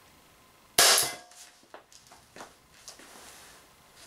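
A single shot from a CO2-powered Umarex Walther PPQ M2 .43-calibre pistol, about a second in. A short metallic ring follows as the ball strikes the tin can. A few light, separate clicks and taps come over the next two seconds.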